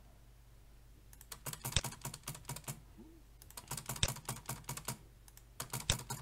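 Computer keyboard keys tapped in two quick runs of clicks, separated by a short pause, as spaces are typed between a row of letters. The first second is quiet before the tapping starts.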